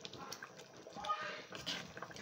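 Faint clinks and scrapes of a metal spoon stirring thick soup in an aluminium pot, with a few short, faint voice-like sounds in the background.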